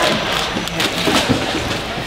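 Low, overlapping voices and laughter mixed with knocks and rustling as packaged food is picked up and set down in a cardboard sorting bin.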